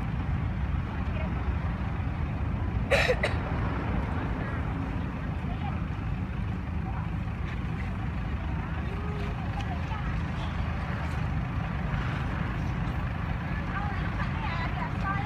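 Steady low rumble with faint voices in the background, and one short, loud, sharp sound about three seconds in.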